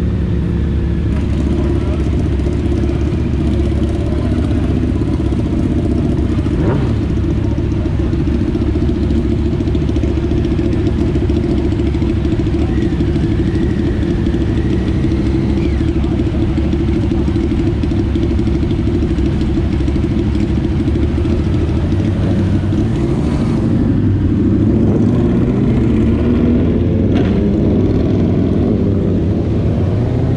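Motorcycle engines idling steadily, low and constant. In the last several seconds the pitch rises as the bikes rev and pull away.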